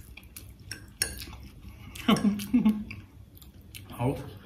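Metal forks clinking and scraping on plates while noodles are eaten, with a sharper clink about a second in. Around two seconds in, one of the eaters makes two short vocal sounds.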